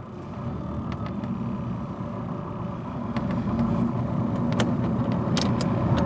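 Coach bus engine heard from inside the cabin as the bus pulls away, its low hum growing steadily louder as it gets moving. A few sharp clicks sound near the end.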